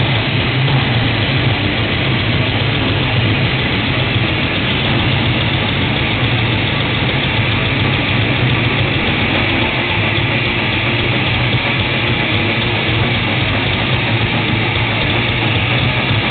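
Black/death metal band playing live: a dense, unbroken wall of distorted electric guitars, bass guitar and drums, heavy in the low end.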